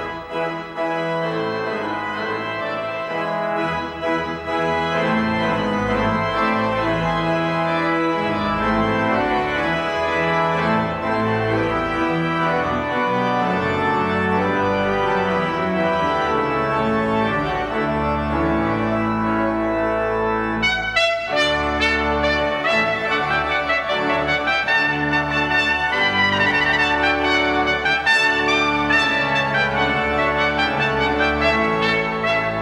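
A 96-rank Ruffatti pipe organ plays alone. After a brief break about two-thirds of the way through, a trumpet joins and plays over the organ.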